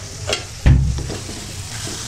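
Masala with peas and potatoes sizzling in a kadhai as a spatula stirs it. A loud, heavy knock comes about two-thirds of a second in.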